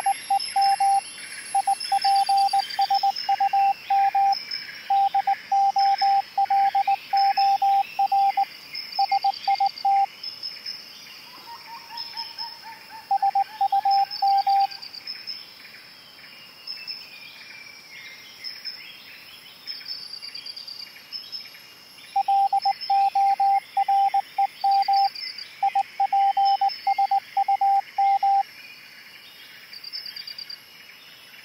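Morse code radio signal: a steady tone keyed on and off in dots and dashes, sent in several bursts, with a short falling whistle about eleven seconds in. Bird chirps run steadily underneath.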